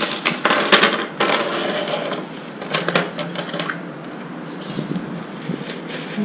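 Small ceramic brooch blanks clicking against each other and the plastic compartment box as they are picked out, and tapping down on a wooden table. The clicks come thick in the first three seconds, then sparser.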